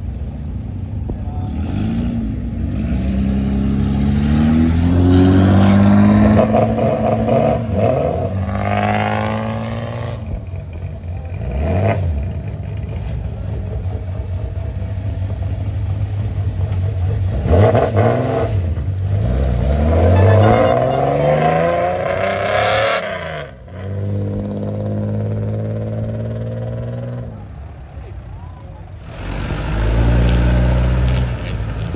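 Engines of lowered, modified classic Japanese cars revved repeatedly as the cars pull away one after another, the pitch climbing and falling through several revs, with a few steadier stretches between them.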